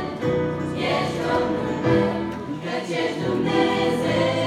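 Girls' choir singing together, holding long sustained notes that change pitch every second or so.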